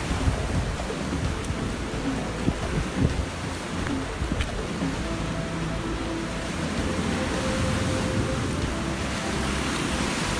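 Sea waves breaking on a rocky shore, with wind rumbling on the microphone, under background music whose short held notes step up and down.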